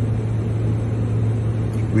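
Steady low rumble and hum of a vehicle heard from inside the car cabin, unbroken through a pause in speech.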